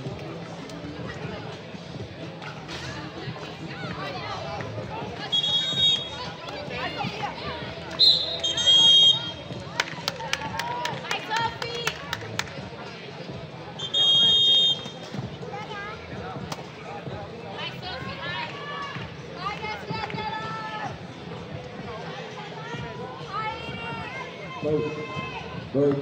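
A referee's whistle blown in four short, high blasts, two of them back to back. Between the blasts a basketball is dribbled on the plastic court tiles, and players' voices call out.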